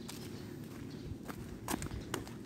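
Footsteps of a person walking across a driveway, a few separate taps over a steady low outdoor background.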